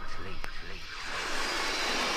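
Techno track in a breakdown: the kick drum drops out, a single click sounds about half a second in, and a noise sweep swells through the rest.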